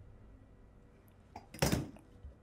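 Quiet room, then a brief handling noise near the end, a short knock and slide, as drafting tools (a metal ruler and a plastic set square) are set down and moved on the table.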